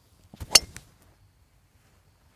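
Driver clubhead striking a golf ball off the tee: a single sharp crack about half a second in.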